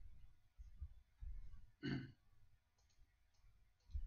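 A short sigh about two seconds in, over faint low bumps on a microphone, with a few faint clicks near the end.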